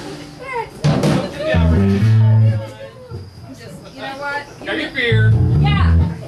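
Amplified guitar sounding a low note that is left to ring, once about a second and a half in and again near the end, with talk from the stage in between.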